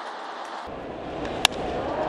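Ballpark crowd hum, then about one and a half seconds in a single sharp crack of a wooden bat hitting a pitched baseball, sending a fly ball to deep center field.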